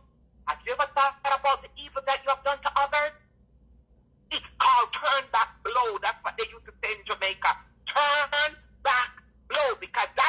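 A person's voice talking, with a pause of about a second in the middle.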